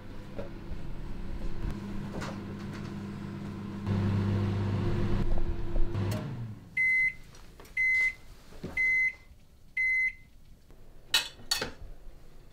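Microwave oven running with a steady hum that stops about six seconds in, followed by four short high beeps about a second apart signalling the end of the cooking cycle, then a couple of sharp clicks near the end.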